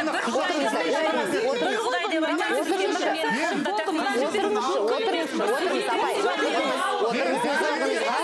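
Several people talking over one another at once in a heated exchange, with no single clear voice.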